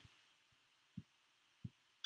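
Near silence: room tone, with two faint, short, low thumps, one about a second in and another a little over half a second later.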